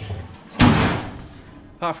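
A rear barn door of a Toyota Land Cruiser 60 series slammed shut about half a second in: one sharp bang that dies away over about a second.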